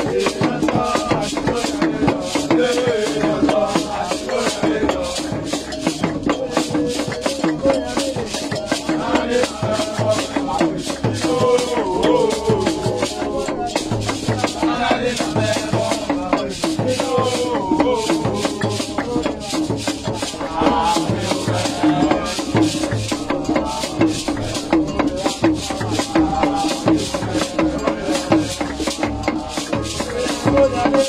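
A group singing and chanting together over a hand drum and rattling shakers, with a steady beat throughout.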